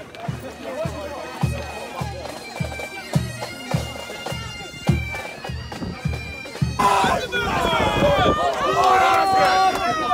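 Bagpipes playing a march over a steady bass drum beat of about two strokes a second. About seven seconds in, the music gives way abruptly to loud shouting voices.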